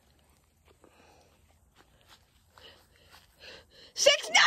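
Nearly quiet: faint handling and rustling sounds, with a few faint murmured voices in the second half.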